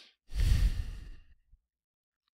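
A man's heavy sigh, exhaled straight into a close microphone so the breath blows across it with a low rumble; it lasts about a second.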